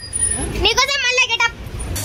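A person's voice for about a second in the middle, over the low rumble of city road traffic.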